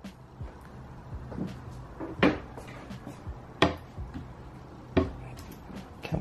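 A few sharp knocks and clunks from handling a wooden wire soap-loaf cutter and the freshly cut soap, the loudest about two, three and a half and five seconds in, over a faint low hum.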